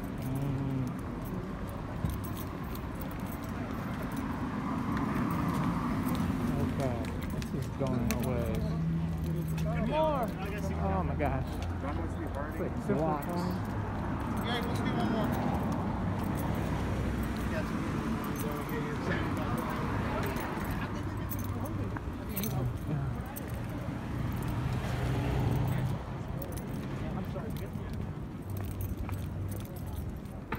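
Chatter of people standing in a long sidewalk queue, voices passing by as the recorder walks along the line, over a low steady hum.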